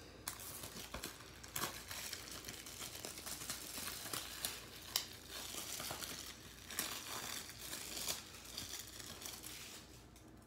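Plastic shrink wrap being peeled and torn off a Blu-ray case: a continuous crinkling and crackling with frequent sharp crackles, which stops at the end.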